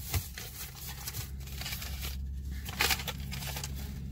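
Plastic shopping bag and packaging rustling and crinkling in irregular short bursts as items are rummaged through by hand, over a steady low hum.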